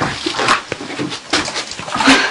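A woman whimpering in short, irregular sounds.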